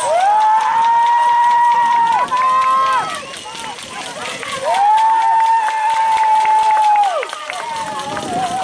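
Voices shouting long, drawn-out calls at an American football game: one held about two seconds, a shorter, slightly higher call right after it, then a pause and another long held call of about two and a half seconds that falls away near the end.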